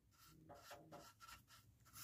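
Near silence: room tone, with only a few very faint, brief sounds around the middle.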